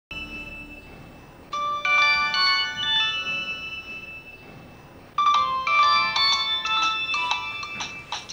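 Mobile phone ringing with a melodic ringtone: a short chiming tune that plays, pauses briefly, and starts again about five seconds in.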